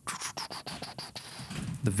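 Quick, irregular clicking from a computer's mouse and keys, heard close on a studio microphone, as a plugin menu is scrolled through.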